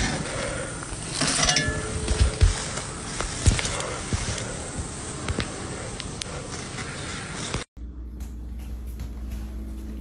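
Scattered metallic clanks and knocks as a metal electrical control box is pried open with a pole, over steady outdoor noise. Near the end the sound drops out briefly, and a quieter low steady hum follows.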